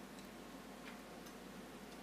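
Very quiet room tone in a pause between speech: a steady faint hiss and low hum, with a few tiny faint ticks.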